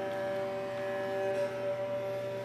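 Live drone music from a long-necked Indian string instrument: a steady held chord of sustained notes that does not change.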